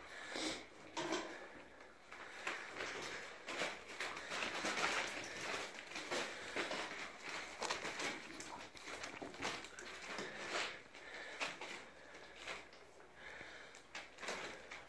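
Bernese mountain dog puppies eating together from a metal bowl: a continuous irregular patter of chewing, sniffing and clicks from muzzles and food against the bowl.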